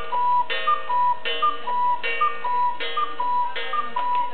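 German cuckoo clock calling the hour at twelve: a steady run of two-note cuckoo calls, a short higher note then a longer lower one, repeating about every three-quarters of a second and stopping near the end.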